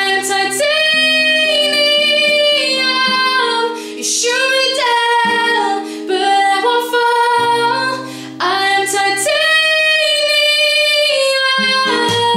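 A woman singing with her own acoustic guitar accompaniment, in long held notes across several phrases, with short pauses for breath about four and eight seconds in.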